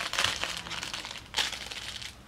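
A schnauzer puppy mouthing and nosing a crinkly toy, the toy crinkling in bursts, loudest at the start and again about one and a half seconds in.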